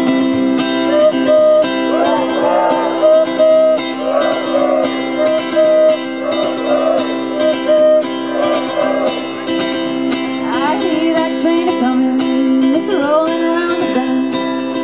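Acoustic guitar strumming a steady rhythm while a woman sings a train-whistle 'woo hoo' call and a crowd sings it back, four times over. Near the end come rising vocal whoops.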